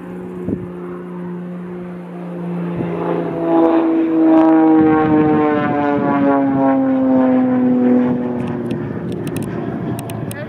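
Extra 300L aerobatic plane's six-cylinder Lycoming engine and propeller droning, swelling louder about three seconds in. Its pitch then falls steadily for several seconds as the plane passes close by.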